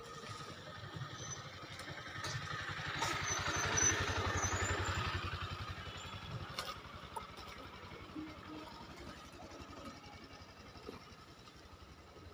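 A motor vehicle's engine passes by, growing louder to a peak about four seconds in and fading away by about six seconds.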